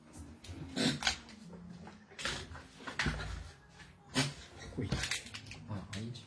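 A string of short rustles and light knocks about a second apart: someone handling small objects close to the microphone.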